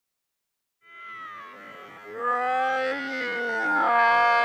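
People's voices calling out in long, drawn-out shouts, starting about a second in and growing louder near the end.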